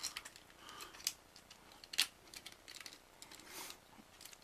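Plastic parts of a Transformers Sentinel Prime figure clicking and rattling under the hands as a panel is opened and the fist is fitted inside. The clicks are few and scattered, the sharpest about two seconds in.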